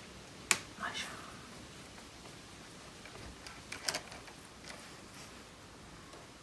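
Sharp metallic click about half a second in, then a few lighter clicks around four seconds in: a screwdriver working the bolt of a motorcycle battery's negative terminal as it is loosened to disconnect the battery.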